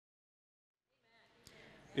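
Silence for about the first second, then faint room tone with a single click, and a man's voice starting right at the end.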